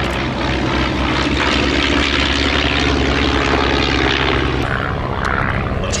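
Two Miles Magister trainers in formation, their de Havilland Gipsy Major four-cylinder engines and propellers running steadily in a flypast. The sound is fullest through the middle, and the steady low engine note breaks up near the end.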